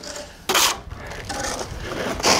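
Steel plastering trowel scraping wet stucco, with one sharp scrape about half a second in followed by fainter scraping.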